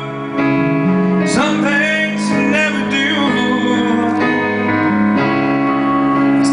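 Live band playing an instrumental passage of a slow song, with electric bass and melodic lines that slide in pitch.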